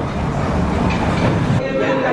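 A steady low rumble and clatter with voices over it, cutting suddenly to background music and chatter about one and a half seconds in.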